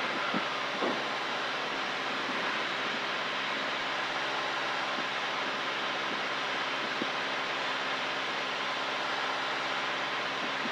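Cessna 172's engine and propeller droning steadily at constant power, heard inside the cabin together with the rush of airflow. A faint click or two stands out briefly.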